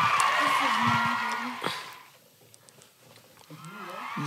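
Women's voices calling out in reaction, with one drawn-out vocal call about a second in. The voices then break off into near silence for about a second and a half before they start again near the end.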